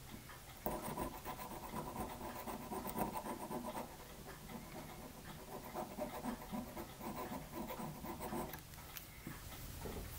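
Faint, rapid scraping of a dull No. 18 chisel hobby-knife blade over a brass photo-etch bending tool, scraping dried CA glue off the metal. It starts about half a second in and stops shortly before the end.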